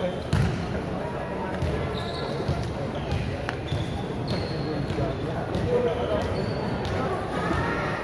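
Indoor volleyball hall sounds: a volleyball thudding and bouncing on the court, the loudest knock just after the start, with brief high squeaks of shoes on the floor. Players' and spectators' voices carry on under it all, echoing in the hall.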